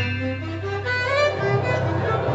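Small jazz combo playing: a reed instrument carries a melody of short held notes stepping up and down, over walking upright bass and drums played with mallets.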